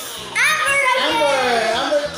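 A child's high voice calling out or talking, starting about half a second in, with pitch that slides up and down.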